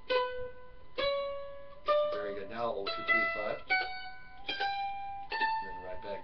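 Mandolin picked one note at a time, slowly climbing a D scale from the open D string, about one note a second and each a little higher than the last.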